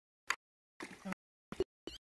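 Live-stream audio breaking up on a weak connection: mostly dead silence, cut through by a few brief clipped fragments of sound, one of them a murmured "mm".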